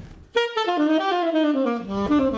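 Tenor saxophone playing a phrase that falls in pitch, coming in about a third of a second in after a brief pause.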